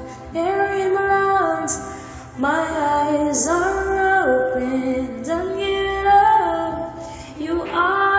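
A woman singing a pop ballad melody in phrases of long held notes that slide up and down between pitches, with short breaks between phrases.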